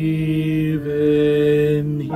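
Men's and a woman's voices singing sustained held notes of a hymn in harmony, with the tenor line prominent; the chord moves to new notes just under a second in.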